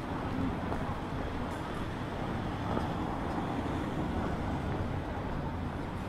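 City street ambience: a steady low rumble of road traffic.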